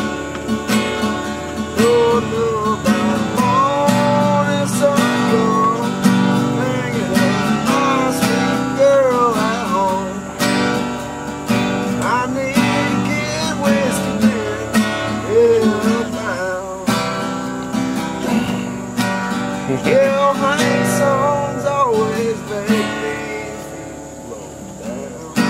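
Acoustic guitar strummed steadily while a harmonica plays a melody over it, its notes bending and wavering.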